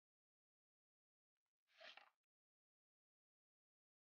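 Near silence, broken by one faint, brief sound about two seconds in.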